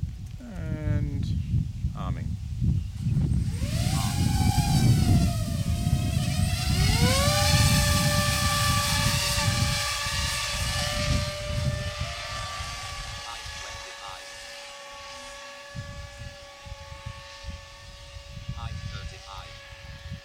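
Electric VTOL quadplane's motors and propellers spinning up for takeoff, with a wavering, rising whine under a low rumble. About seven seconds in, a steady propeller whine takes over as the plane flies away in forward flight, slowly fading.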